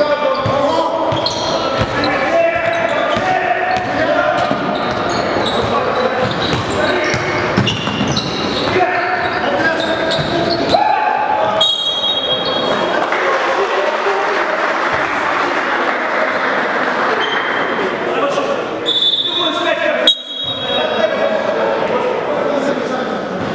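Basketball being dribbled on a gym floor, with voices of players and spectators echoing in a large sports hall. About halfway through it turns to a steadier crowd din, with a few short high squeaks.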